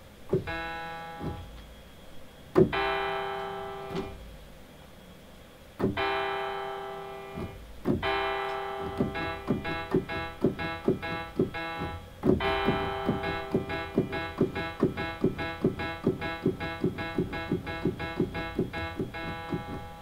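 Piano sound in Ableton Live played from a MIDI keyboard through a cheap USB-to-MIDI adapter: a few single notes that ring on and slowly fade, then rapidly repeated notes, about two or three a second, over a held note. Notes hang instead of stopping when the keys are let go because the adapter is not passing the note-off.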